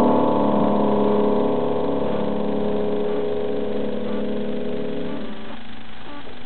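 Upright piano holding a final chord struck just before this, slowly dying away, then damped about five seconds in as the piece ends.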